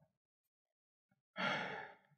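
A man's short audible breath about a second and a half in, after near silence.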